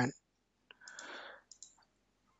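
Computer mouse clicking: a single click, a short soft noise, then two quick clicks.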